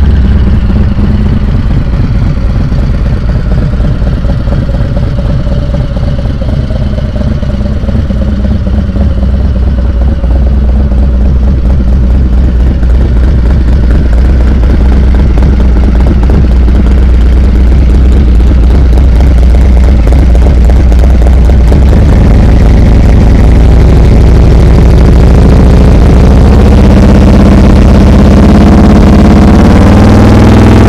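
The Milwaukee-Eight 128 V-twin of a Stage IV Harley-Davidson Fat Boy with an aftermarket exhaust, idling steadily with a deep, even rumble. The rumble grows fuller over the last several seconds.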